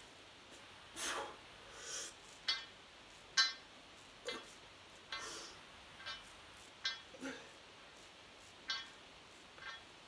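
A man breathing hard while exercising with a bar: a string of short, sharp exhales and sniffs, roughly one a second and unevenly spaced, the loudest about three and a half seconds in.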